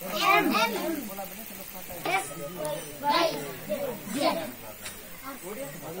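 Children's voices calling out short phrases: loudest at the start, then again about once a second from two seconds in, over a faint steady low hum.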